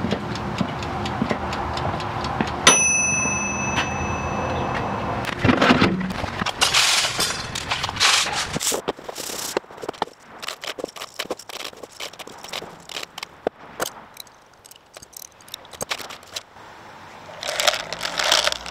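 Emerson toaster oven's timer bell dinging once about three seconds in, a sharp ring that fades over a couple of seconds, over a steady hum. Then many small clicks and rattles of powder-coated lead bullets knocking together as they are handled and put into a plastic tub.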